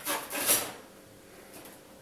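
Copper fitting pushed and twisted onto the end of a copper pipe, a short metal-on-metal scrape peaking about half a second in.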